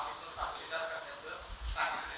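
Soft, broken fragments of a man's voice at a microphone, in short bursts, with a brief high tone in the middle.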